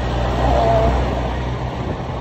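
A vehicle's engine humming steadily with road and wind noise while moving through traffic. A brief pitched sound comes about half a second in.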